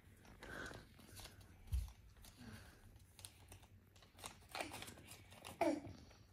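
Faint rustling and crinkling of a folded paper note being unfolded by hand, with a soft low thump about two seconds in.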